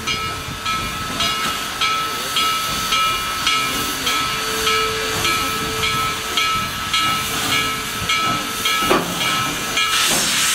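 Western Maryland No. 734, a 2-8-0 steam locomotive, hissing steam as it creeps onto a turntable, its bell ringing about twice a second. A louder burst of steam hiss comes in at the very end.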